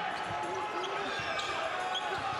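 A basketball being dribbled on a hardwood court, a few light bounces over the steady murmur of the arena crowd.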